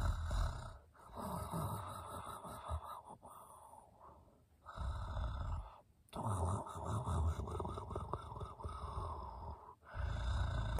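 A person making pretend snoring sounds, several long drawn-out snores with short pauses between them.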